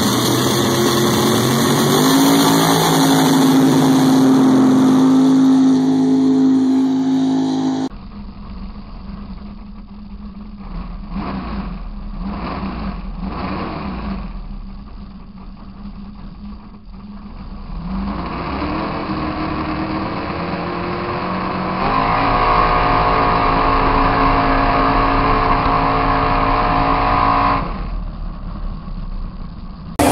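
Supercharged mud-racing engine at full throttle through a mud pit: it revs up and holds a steady high pitch, the sound cuts to a more muffled recording, then it revs up again and holds before falling away near the end.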